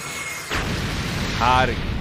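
Anime lightning-blast sound effect: a sudden heavy rumbling crash of electric thunder begins about half a second in and continues, with a brief voice sounding over it.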